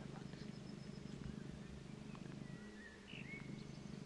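Faint small-bird calls: a thin high whistle in the first second, then a level whistle and a few short chirps around the middle, over a steady low hum.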